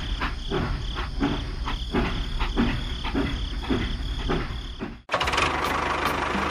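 Battery-powered toy steam train running on its plastic track: a steady high whine with a regular chugging rhythm of about three beats a second. It cuts off suddenly about five seconds in and gives way to music.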